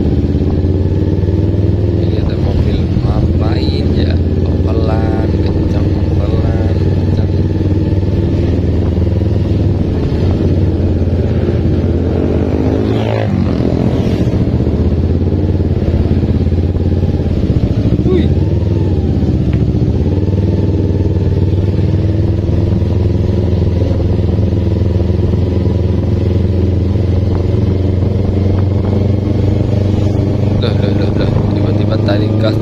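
Carbureted Kawasaki Ninja 250 parallel-twin engine running steadily as the motorcycle is ridden at a low, even pace, heard from the rider's seat.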